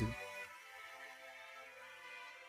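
Quiet soundtrack music from the anime episode, a sustained chord held steady.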